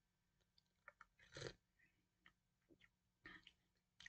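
Near silence with a few faint mouth sounds of sipping and swallowing tea from a mug. The clearest is a brief sip about a second and a half in.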